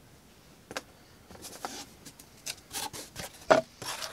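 Handling noise as a folding knife and a sheet of cardboard are picked up off a tabletop: a few light clicks and rustles, with one sharper knock about three and a half seconds in.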